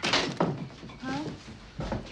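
A few dull knocks from a film soundtrack: one near the start, one about half a second in and one near the end. Short voice sounds, grunts or clipped words, come between them.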